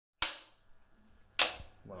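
Film clapperboard snapped shut twice, about a second apart; each snap is a sharp crack with a short fading tail.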